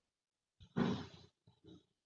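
A person's short throaty vocal sound, not words, picked up by a video-call microphone about three quarters of a second in, followed by two faint shorter ones near the end, with the line cut to silence in between.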